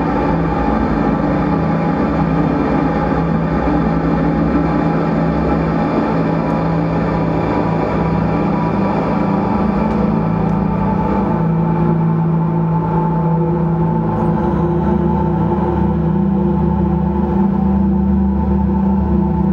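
Live ambient drone music: electric guitar sent through effects pedals and laptop processing, making a loud, steady wash of layered sustained tones with no beat.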